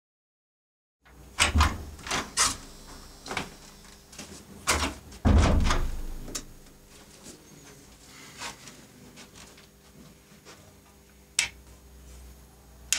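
Clicks and knocks of audio gear being handled and switched on, with a heavy thump about five seconds in, over a steady electrical hum from the equipment.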